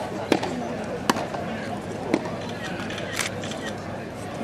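Tennis ball struck by rackets in a practice rally: three sharp pops about a second apart, with a lighter click near the end.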